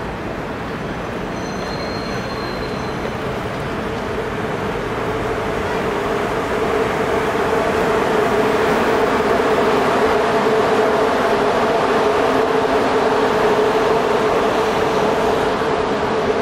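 Steady street traffic noise with a vehicle hum that swells over the first half and then holds. A faint high-pitched squeal comes briefly about a second in.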